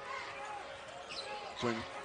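Basketball broadcast game sound: a ball dribbled on the hardwood court over low arena background noise, with a commentator's voice starting near the end.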